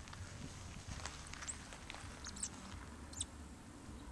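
A bird chirps three times, short and high, about a second apart, over a steady low rumble.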